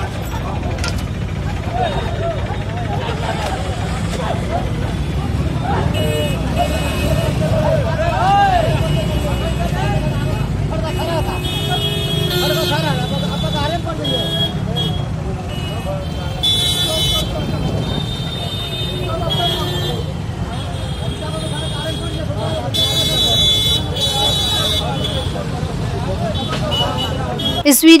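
Street crowd shouting and talking over steady traffic noise, with a vehicle horn honking several times in the second half.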